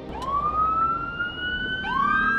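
Emergency vehicle siren wailing: one long tone rising slowly in pitch, with a second siren starting to rise near the end, over a low traffic rumble.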